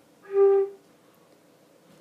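A concert flute playing a single short note, G, held for about half a second starting a quarter second in.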